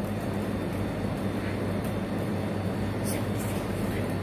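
Steady low hum with a background hiss, unchanging throughout; no voice.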